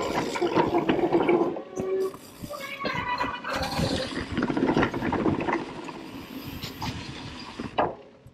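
Mountain bike rolling down a leaf-covered dirt trail: tyres running over the leaf litter, with rattles and knocks from the bike over the bumps. The rear freewheel hub buzzes briefly as the rider coasts about three seconds in, and the sound gets quieter toward the end.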